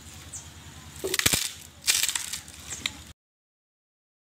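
A long bundle of dry stalks beaten against a tree trunk: two loud strikes about a second apart, then a lighter one. The sound cuts off suddenly about three seconds in.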